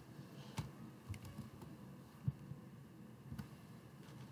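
A few faint, scattered computer keyboard keystrokes, about five taps spread over the few seconds.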